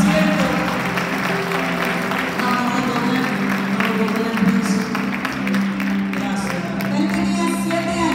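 Live church worship band playing a slow, sustained song in a large hall, with voices and scattered claps from the congregation mixed in.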